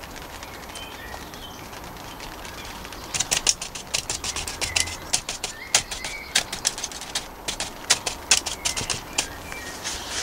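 Irregular sharp crackling and clicking of thin plastic being handled, starting about three seconds in: a plastic water bottle being picked up for watering the seed pots. Faint bird chirps sound in the background before it.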